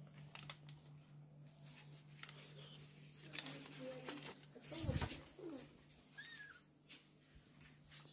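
Newborn kittens mewing faintly as a hand handles them in their nest, with cloth rustling and a louder knock about five seconds in, over a steady low hum.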